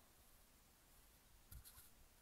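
Near silence: faint outdoor background, with one brief soft rustle about one and a half seconds in.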